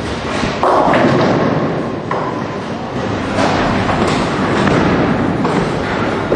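Bowling alley noise: a steady rumble of balls rolling on the lanes, broken by about four sudden crashes of balls hitting pins.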